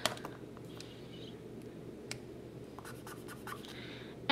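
Faint scratching of an Ohuhu marker tip being swatched on paper, with a few sharp clicks as markers are picked up and handled.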